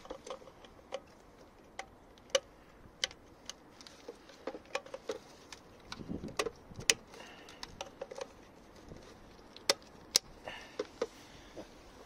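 Irregular sharp clicks and taps of plastic wiring connectors and the engine control unit's housing being handled as the unit's plugs are unlatched and refitted in the engine bay.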